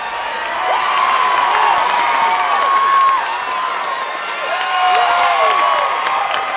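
Crowd at a softball game cheering loudly, full of high-pitched screams and whoops. The cheer swells over the first second, then stays loud.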